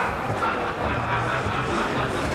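Steady background hubbub of a busy indoor exhibition hall: a murmur of many distant voices with no single loud event.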